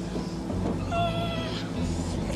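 Puppy whimpering: a few high whines, one held for about half a second.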